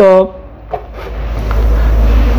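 Desktop computer on an open motherboard bench powering on: its power supply and cooling fans start up, a low steady hum that builds from about a second in.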